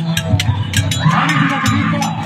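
Music with sharp percussive strikes about three a second, repeating low tones, and a wavering high melodic line, with crowd noise rising about a second in.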